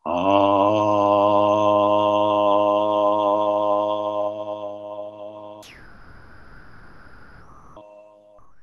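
A man chanting one long, steady note with a slight waver in pitch, sounded to open a shared Dzogchen meditation practice. It breaks off after about five and a half seconds, leaving a much fainter high tone and hiss.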